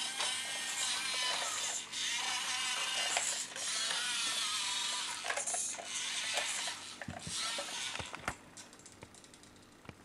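Electric drive motor and gearbox of a 1:32-scale Siku Control RC tractor whirring as it drives, the pitch wavering. It pauses briefly near two seconds, stops about five seconds in, and then comes in short bursts with a few clicks before going quiet near the end.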